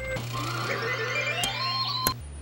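Electronic sound effect: several tones climbing steadily in pitch over a steady low hum, with a sharp click about one and a half seconds in.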